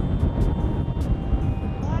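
Fast-flowing mountain river rushing over a stony bed, with wind buffeting the microphone.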